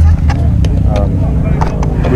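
Steady low rumble under faint voices, with a few sharp clicks from a cardboard paint-set box being handled.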